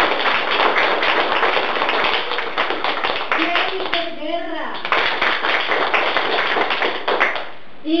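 Applause from a small group: dense, quick hand claps, with a short voice cutting in about halfway through. The clapping stops shortly before the end.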